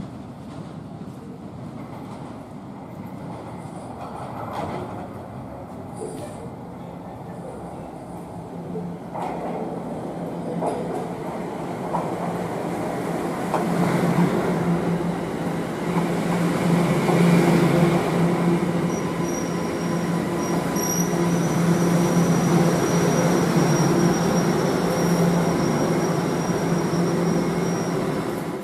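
Toronto Rocket subway train pulling into an underground station, its rumble growing louder as it comes in alongside the platform, with a steady low hum. From about two-thirds of the way in, a thin high squeal sounds over it.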